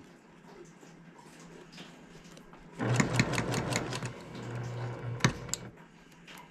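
Electric sewing machine stitching pinned quilt pieces: after a few quiet seconds it runs for about three seconds with a steady motor hum and rapid needle clatter, with one sharp click just before it stops.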